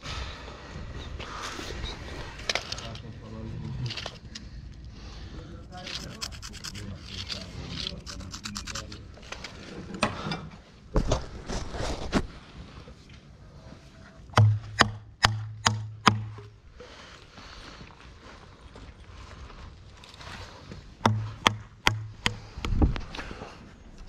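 Hammer driving a nail into a wooden board: a quick run of about six sharp blows about halfway through, then a second run of about five a few seconds later. Scraping and rubbing of wood and tools on the concrete come between the blows.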